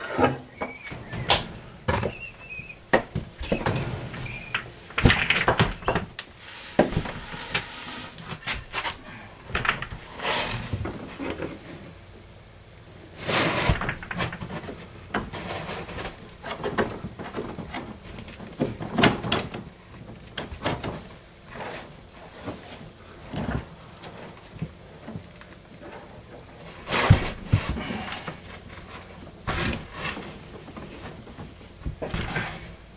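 Irregular knocks, scrapes and rustles of someone handling a fiberglass fish rod and feeding it down through a drilled hole in the attic floor into a wall's stud bay, with a short squeak about two seconds in and a few louder knocks.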